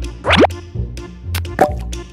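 Light background music with a steady beat, over a cartoon 'bloop' sound effect: a quick upward pitch glide about a quarter second in, followed by a shorter plop near the end.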